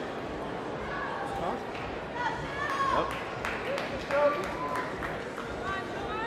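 Indistinct audience voices in a large hall: a steady murmur with scattered shouts and calls.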